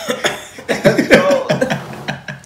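Men laughing hard in short bursts.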